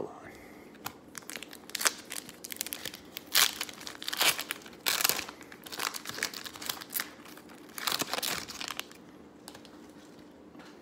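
A shiny foil trading-card pack wrapper being torn open and crinkled by hand, in a run of sharp crackling rustles that dies away near the end.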